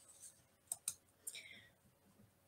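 A nearly silent pause with a few faint, short clicks, two of them close together a little under a second in.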